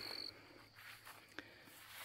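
An insect's steady high trill that cuts off just after the start, leaving faint outdoor quiet with a single short click about two-thirds of the way through.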